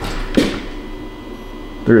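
A brief pause in speech: a low background with a faint steady hum, and one short sharp sound about half a second in. A man's voice starts again at the very end.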